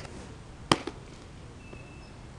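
A pitched baseball smacking into a catcher's mitt: one sharp pop about three-quarters of a second in, followed closely by a smaller snap.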